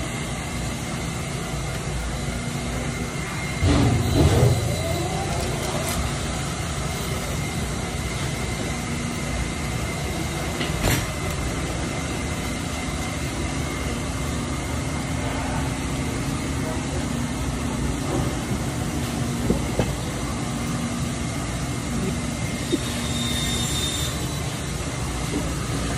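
Steady mechanical rumble with a faint hum, swelling louder with a rising whine about four seconds in, and a few sharp clicks.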